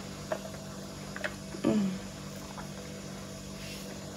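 A woman sipping a drink through a metal straw from an insulated tumbler: a few faint clicks, and a short vocal "mm" with falling pitch about one and a half seconds in, over a low steady hum.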